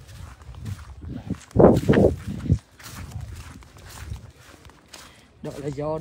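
Footsteps on grass with rustling from the handheld phone, and a louder burst about two seconds in. A voice starts near the end.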